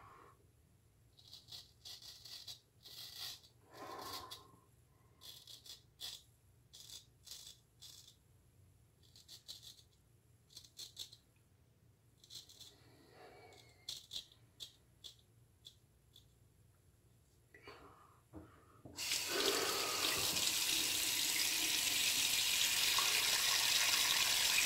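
Straight razor scraping through lathered stubble in many short, irregular strokes with pauses between. About nineteen seconds in, a water tap is turned on and runs steadily.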